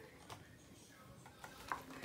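Near silence: quiet room tone with a couple of faint clicks as a picture book is held up and turned.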